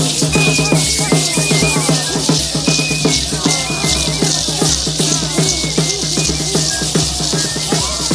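Parachico dance music: a cane flute plays a high, stepping melody in short repeated phrases over the dense, rhythmic shaking of many gourd rattles (chinchines).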